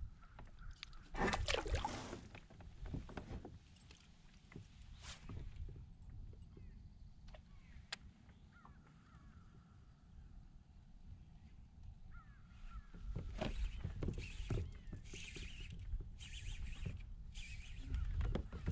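Wind rumbling on the microphone over a fishing kayak, with scattered knocks and handling noises from the angler and his gear, heaviest in a burst about a second in and again in the last few seconds.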